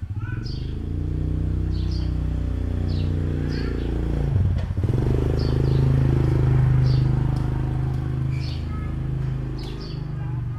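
An engine running, a steady low hum that starts abruptly and briefly dips about four and a half seconds in. Short high chirps recur over it.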